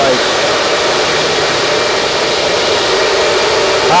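Steady rush and hum of a room full of Bitmain Antminer S19-series ASIC bitcoin miners running, their cooling fans all spinning at once.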